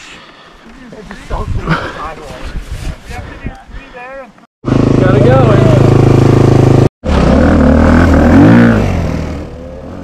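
KTM dirt bike engine running loudly close by, coming in abruptly about halfway through, with a rise and fall in revs near the end before it fades.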